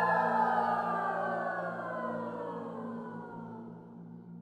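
Choir: the upper voices glide slowly downward in pitch over a held low chord, the whole sound fading away as the piece closes.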